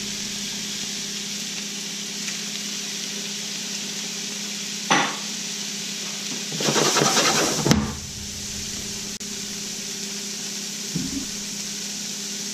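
Shrimp and lump crab meat sizzling in a sauté pan with diced peppers and onions, over a steady low hum. There is a short clatter about five seconds in, and a louder stirring scrape around seven seconds that ends in a sharp knock.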